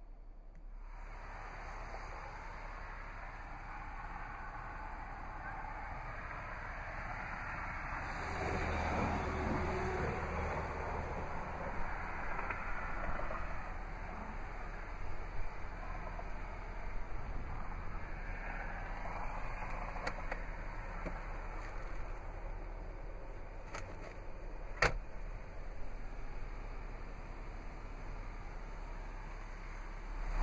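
Steady background noise of an outdoor lot, with a low rumble swelling about eight seconds in and a few sharp clicks in the second half.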